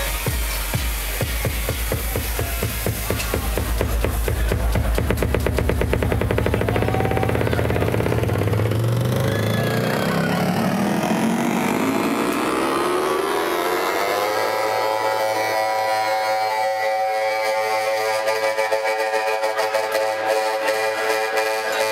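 Electronic dance music played loud over a club sound system, heard as a DJ build-up. A heavy, fast beat quickens over the first ten seconds, then the bass drops away and a synth tone rises steadily in pitch, settling into a held chord near the three-quarter mark.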